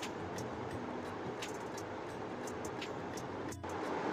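Chicken and sliced onions frying in oil in a non-stick pot: a steady sizzle with scattered crackles of spitting oil.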